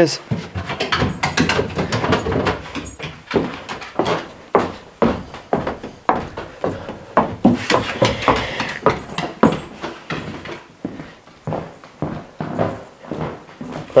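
Footsteps of a person and a dog going up wooden stairs and across a wooden floor: a run of irregular thumps and knocks, a couple each second.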